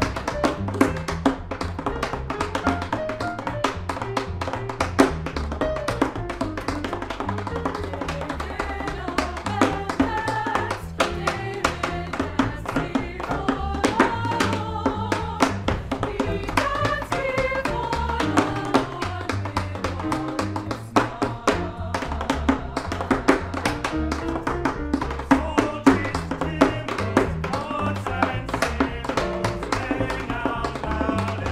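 Tap dancer's shoes striking a wooden board in rapid, dense rhythms over jazz piano and upright bass, with a choir singing.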